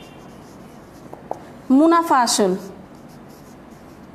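A marker pen writing on a whiteboard: soft, steady strokes with a couple of small taps about a second in. A short spoken word breaks in about halfway through and is the loudest sound.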